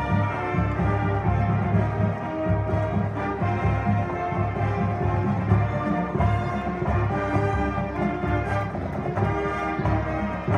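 Brass band music with drums: held brass chords over a steady low beat.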